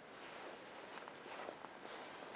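Faint rustling with a few small clicks and crackles from pine sprigs and greenery being handled and pushed into a bark-based table arrangement.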